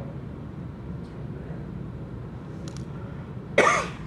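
Steady low room hum, with a couple of faint clicks about two and a half seconds in, then a short, loud cough near the end.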